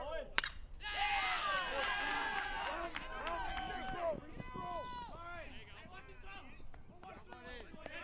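A baseball bat striking a pitched ball with one sharp crack, followed by a burst of many voices shouting and cheering at once that tails off over the next few seconds.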